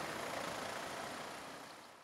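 Steady outdoor traffic and street noise, fading out gradually to near silence.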